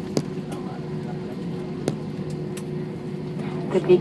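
Steady cabin noise of an Airbus A321 rolling out on the runway after touchdown: an even rumble with a constant hum and a few sharp clicks and rattles. A woman's cabin announcement begins just before the end.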